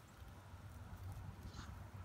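Mother dog and newborn puppies shifting on straw bedding: a faint rustle about one and a half seconds in, over a low rumble.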